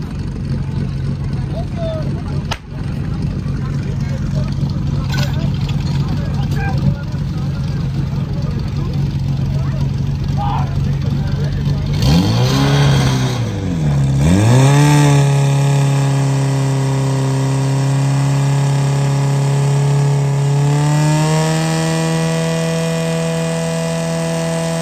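Portable fire pump's engine idling steadily, then about twelve seconds in its pitch dips and swings back up as it is throttled and takes up the load of pumping, settling at high, steady revs and stepping up higher again near the end. A sharp crack sounds about two and a half seconds in.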